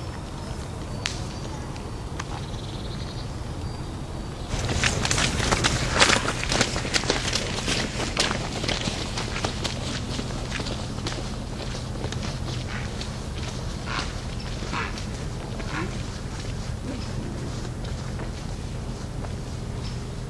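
Footsteps of several people crunching on a dirt-and-gravel forest path. They start loud about four and a half seconds in as the walkers pass close, then grow fainter as they walk away.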